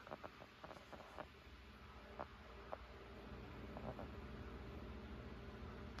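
Two iMac G3 computers booting up: a faint, steady low hum with a few soft, scattered clicks.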